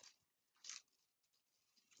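Near silence: room tone, with one short soft rustle less than a second in and a few faint ticks after it.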